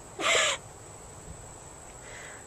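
A person's short breathy laugh, a single half-second hoot, followed by quiet.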